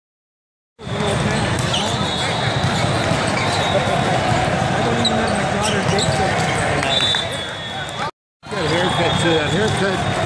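Silence for the first second, then the din of a big indoor volleyball hall: many voices talking and calling, with volleyballs being struck and bouncing. It cuts out briefly for a moment about eight seconds in, then picks up again.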